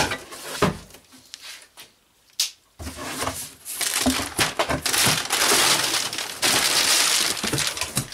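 Cardboard box flaps being pulled open with a few scrapes and knocks, then, from about three seconds in, clear plastic cushion packing crinkling loudly and continuously as a hand rummages through it.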